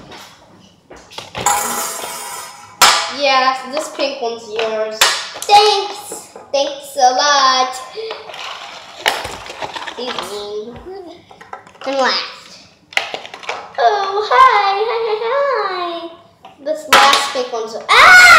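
A young girl's voice making wordless play sounds and sing-song noises in short bursts throughout. About a second and a half in there is a brief rustle, like the plastic packaging being handled.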